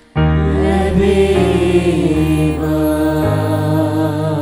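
A church hymn sung over held accompaniment chords. The singing begins abruptly just after the start, after a fade, and the chords change every second or so beneath a wavering melody.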